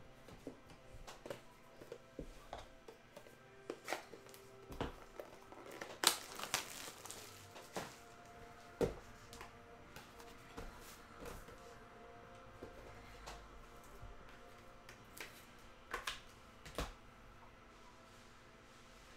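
Trading cards and their plastic sleeves being handled: scattered light clicks and crinkles, with a louder flurry about six seconds in and another near the end.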